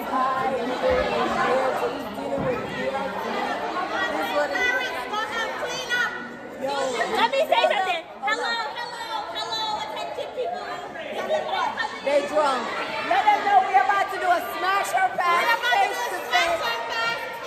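Chatter: several women's voices talking over one another.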